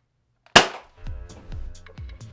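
One sharp gunshot-like bang about half a second in, fired as a toy blaster is held to a man's head. About a second in, music comes in with a few lighter hits over it.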